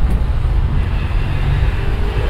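A loud, steady low rumble of background noise that runs on without change.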